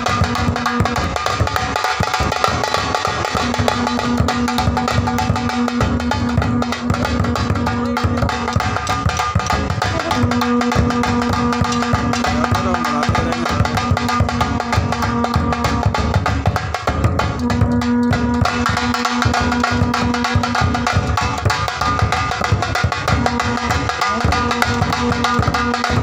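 Nagada kettle drums and a tasha drum beating a dense, unbroken rhythm, with a long curved turai horn blowing long held notes four times, each lasting a few seconds.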